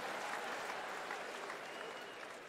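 Large audience applauding after a punchline, the applause steadily fading away.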